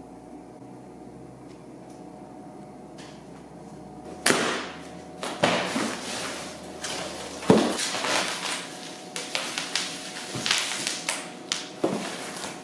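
A steady low hum for about four seconds, then a cardboard shipping box being opened and its packing handled: a run of irregular sharp rustles, scrapes and crinkles of cardboard flaps, sheet foam and bubble wrap.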